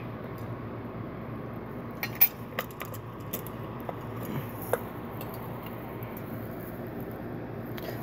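A few light metallic clicks and clinks, scattered between about two and five seconds in, as a ceiling fan's metal down rod is worked against the fitting on the motor housing while being threaded in. A steady low room noise runs underneath.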